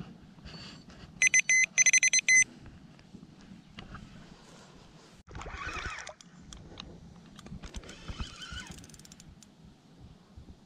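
A rapid burst of loud, high electronic beeps lasting about a second, starting just after the first second. It is followed by rustling handling noise and a run of light clicks as a spinning reel is handled.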